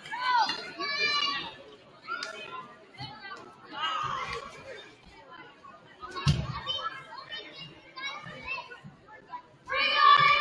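Children's voices calling and chattering in a gymnasium, coming and going in short high-pitched bursts, with a single thud about six seconds in.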